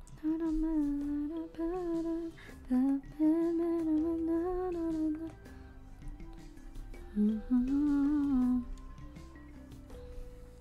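A woman humming a tune in three short phrases, with a pause between the second and third, over soft background music.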